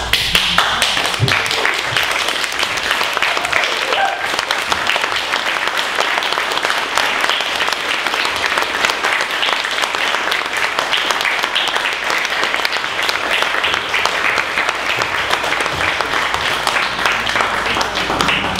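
Theatre audience applauding, breaking out all at once and going on steadily.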